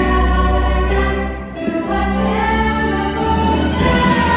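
Several girls' voices singing together over a musical accompaniment with a strong bass line, with a brief dip in loudness about a second and a half in.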